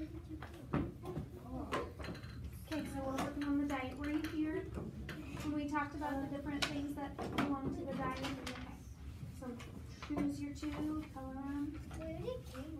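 Children's voices talking, mixed with scattered light clicks and knocks of small objects on tabletops.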